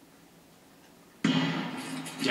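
A speed-skating starting gun fires suddenly about a second in, after a hushed pause in the set position. Loud crowd noise carries on behind it as the 500 m race gets under way.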